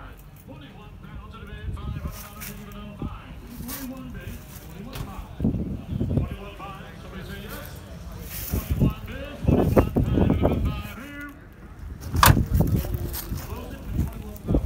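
People's voices talking in the background over low handling rumble, with a single sharp knock about twelve seconds in.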